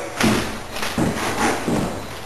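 FinishPro automatic drywall taper (bazooka) being worked, giving three knocks: a sharp one just after the start and two softer ones about a second and about 1.7 seconds in.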